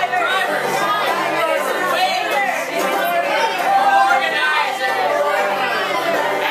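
Several voices singing together in a chorus over strummed banjo and bowed fiddle, an informal group performance of a folk-style song.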